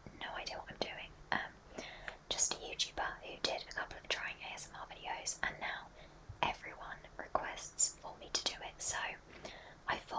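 A woman whispering close into a microphone in soft, breathy phrases, with short sharp clicks between the words.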